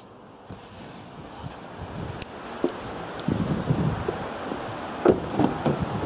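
Rustling and handling noise from a handheld camera on the move, starting quiet and slowly growing louder, with a few light clicks, among them a car door being opened.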